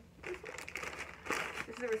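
Brown paper mailer envelope crinkling as it is handled and squeezed.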